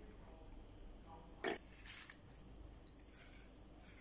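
Quiet kitchen handling as ingredients go into a steel spice-grinder jar: one sharp knock about one and a half seconds in, then a few lighter clicks, over low room tone.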